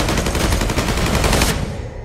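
Automatic rifle fire in one rapid, sustained burst that stops about a second and a half in and then dies away.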